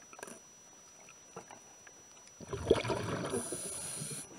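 Underwater recording of a diver's exhaled air bubbles from a scuba regulator, a rough rushing gurgle of about two seconds starting a little past halfway, over faint scattered clicks.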